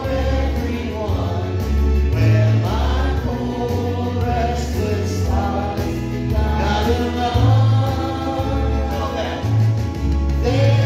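Gospel worship song: a choir singing over a steady bass line.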